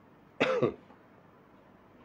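A man coughs once, a short single cough.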